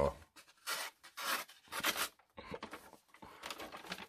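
The blade of a Svörd Micro Copper Peasant Knife slicing through a sheet of paper in several short scratchy strokes, then paper rustling near the end. The cut is not clean, typical of an edge that could use a little stropping.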